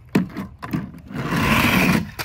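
Plastic toy truck set down with a few light knocks, then sliding down a plastic slide for about a second with a loud scraping rush that stops as it reaches the bottom.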